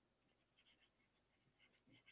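Near silence, with faint scratching of a stylus writing on a tablet.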